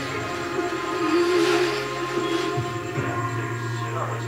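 Music from an FM radio broadcast, with long held bass and keyboard notes and a wavering melody line.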